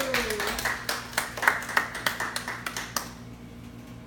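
Sparse clapping from a small audience, about three claps a second, stopping about three seconds in.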